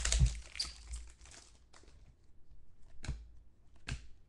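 Plastic trading-card pack wrapper crinkling as it is torn open and crumpled in the hands, densest in the first second and a half. Then quieter, with two sharp taps near the end.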